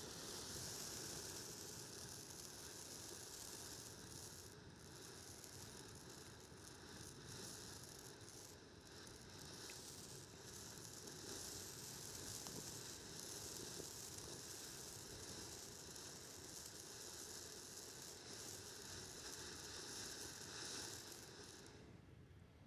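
Consumer ground fountain firework spraying sparks with a faint, steady hiss.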